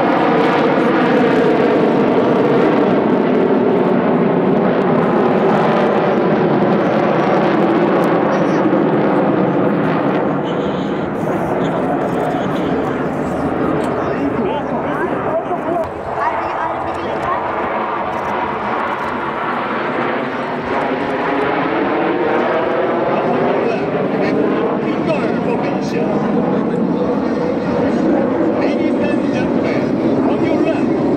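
Jet engines of the Black Eagles' formation of KAI T-50B Golden Eagle jets, a steady loud roar passing overhead. Its tone sweeps slowly downward in the first part and rises again toward the end as the formation passes.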